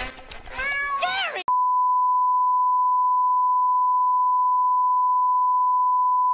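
A short snatch of cartoon soundtrack, a voice over music, cut off suddenly about a second and a half in by a steady single-pitched test tone of the kind played under TV colour bars, which then holds without change.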